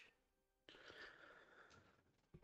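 Near silence, with a faint, brief hiss a little before the middle.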